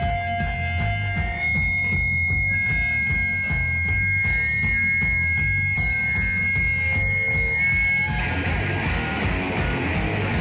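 Hardcore punk band playing live and instrumental: distorted electric guitars, bass and drum kit. A long steady high note holds through most of it, and about eight seconds in the sound turns denser and brighter.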